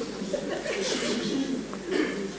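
Faint voices and soft chuckling from people in a hall, under the level of the talk around it.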